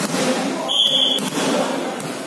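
A referee's whistle gives one short blast of about half a second, about a second in, typical of the signal to serve in volleyball. Around it come a couple of dull thuds of a volleyball bounced on the court floor, over the chatter of players and onlookers in a large hall.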